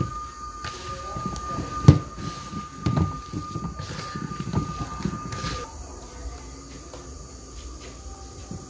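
Hands kneading a moist tapioca-starch and grated-coconut cake batter in a plastic bowl: soft squelching and rustling with irregular knocks against the bowl, the sharpest about two seconds in.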